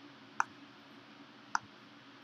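Two computer mouse button clicks, about a second apart.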